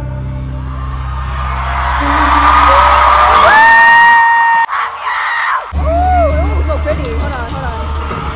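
Live K-pop stadium concert recorded from the stands: a male singer with a backing track, and the crowd cheering and screaming in a rising swell as a high note is held. A little under five seconds in, the audio cuts abruptly to a different song with heavy bass and sliding vocal lines.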